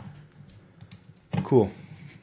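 A few light clicks from computer keys while switching browser tabs, over a low steady hum; a man says "Cool" about a second and a half in.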